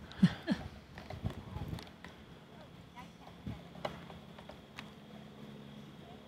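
Crickets chirping, a faint steady high trill, with faint voices near the start and a few scattered light knocks.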